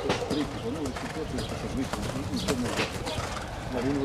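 Outdoor background of people talking indistinctly, with birds calling, among them cooing pigeons or doves.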